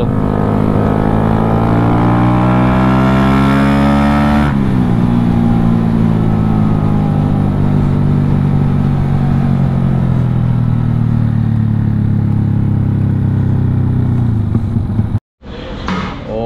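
Yamaha Y15ZR's small single-cylinder four-stroke engine heard from the rider's seat while riding, rising in pitch for about four seconds, then dropping sharply and winding down slowly for around ten seconds as the bike slows. The sound cuts off abruptly near the end.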